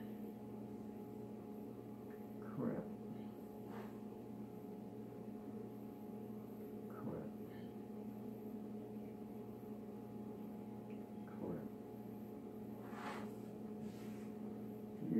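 A steady low electrical hum, with a few faint, brief soft knocks and rustles as hands press and crimp pie dough in a pan on a wooden table.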